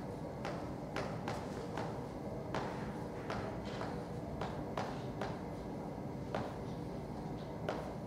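A piece of chalk tapping on a blackboard as an equation is written out: short, sharp clicks at an uneven rate of roughly two a second, over a steady low room noise.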